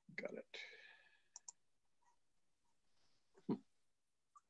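Faint clicks and knocks picked up over a video-call line: a quick pair of sharp clicks about one and a half seconds in and a louder knock near the end, after a brief murmur at the start.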